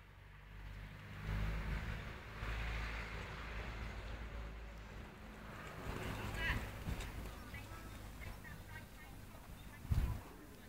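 A horse's hooves on arena sand: a few soft hoofbeats as it passes close, about six to seven seconds in. Under them runs a faint, steady low hum.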